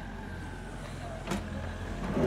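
Mini excavator's diesel engine running with a steady low rumble, and one sharp knock just over a second in.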